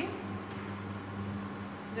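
Dal stuffing roasting in oil in a kadai, a faint steady sizzle, over a constant low electrical hum.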